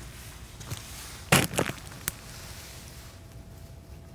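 Two loud sharp knocks about a third of a second apart, then a lighter click, over quiet room noise.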